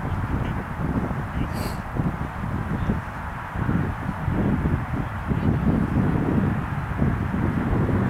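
Low, uneven outdoor rumble with no clear pitch or rhythm, with a brief faint hiss about a second and a half in.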